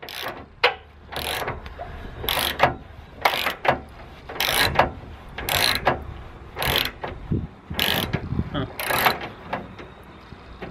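Hand ratchet wrench clicking in short strokes, about one a second, as a bolt on the underside of a car is loosened.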